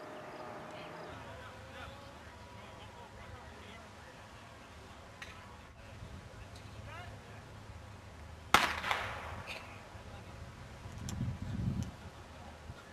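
A single sharp crack about eight and a half seconds in, the start signal as players burst out of a three-point stance into a sprint, followed by a low rumble near the end.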